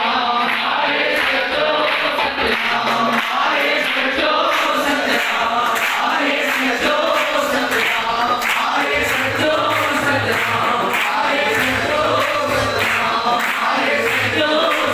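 A congregation singing a devotional chant (dhuni) together, led by a man's voice. A low rhythmic beat joins in about nine seconds in.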